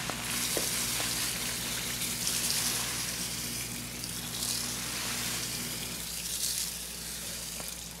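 Crushed malt poured in a steady stream from a bag into the water of a mash bucket: a continuous rustling hiss as the grain pours in. A low steady hum runs underneath and stops about six seconds in.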